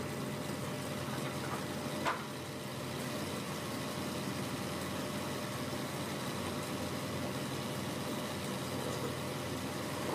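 Wood lathe running steadily with a large wooden rolling-pin blank spinning on it, a constant motor hum. A single sharp click about two seconds in.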